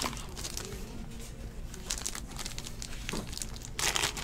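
Plastic wrap on a pack of trading-card sleeves crinkling as it is handled and opened: a scatter of small crackles, louder just before the end.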